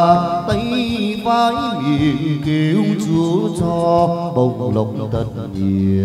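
Chầu văn ritual music: a chant-like sung vocal line with instrumental accompaniment, kept in time by steady percussive clicks.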